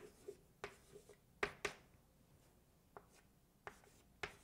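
Chalk writing on a chalkboard: faint short taps and scratches of chalk strokes. There are several in the first second and a half, a quieter gap, then a few more near the end.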